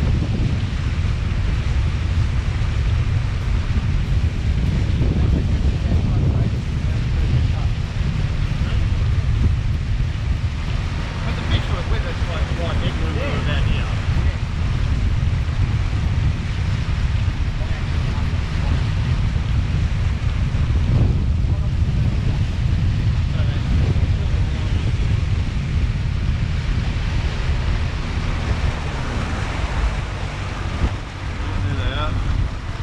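Outboard motor running steadily as the boat travels at speed, with wind buffeting the microphone and the rush of the wake.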